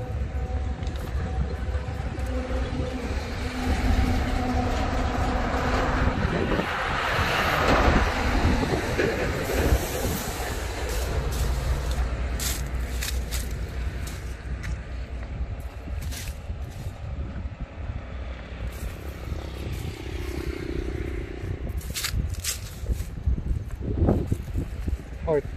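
Train running along the rails with a steady low rumble. The sound swells louder about a third of the way in, and scattered sharp clicks follow in the later half.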